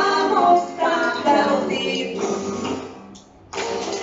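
A children's greeting song with singing over backing music. It breaks off briefly about three seconds in, then the music comes back.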